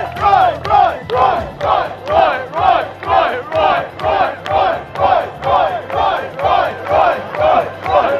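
A crowd chanting a short shout in unison over and over, in a steady rhythm of about two shouts a second.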